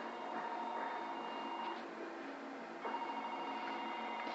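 A steady electronic tone, like a telephone ringing, sounds twice: each time for about a second and a half, with a pause of about a second between.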